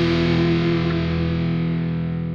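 Final sustained chord of an AI-generated rock/metal song on distorted electric guitar, ringing out with its treble slowly fading.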